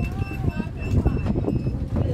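Voices of people chatting on a busy open-air cafe deck, with footsteps knocking on wooden boards. A high, rapidly repeating chirp runs beneath and stops shortly before the end.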